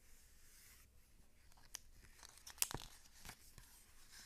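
Faint handling of a hardcover picture book: a soft paper rustle, then a few light clicks and taps, the sharpest about two and a half seconds in.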